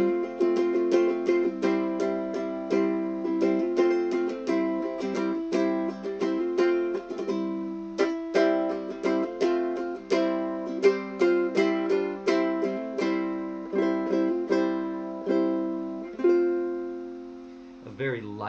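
Mya Moe Tenor Tradition ukulele in striped myrtle, strung with a wound low-G and fluorocarbon strings, strummed through a run of chords. Near the end the last chord is left to ring out and fade.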